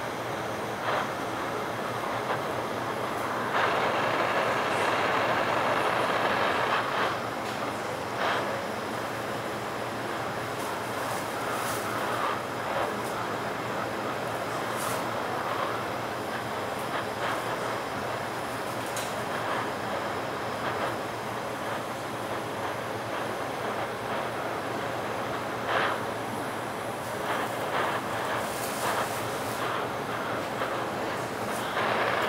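Lampworking bench torch burning with a steady rushing hiss as borosilicate tubing is worked in its flame. The hiss swells louder for a few seconds early on, and a few faint clicks are scattered through it.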